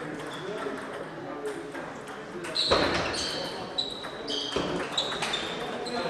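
Table tennis being played in a large echoing sports hall: sharp clicks of the ball against bats and table, with short high squeaks. A louder sharp knock comes about two and a half seconds in. Background voices carry through the hall.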